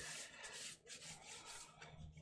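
Faint rubbing of a paper towel pressed and wiped over the wet paint of a painting, blotting up paint.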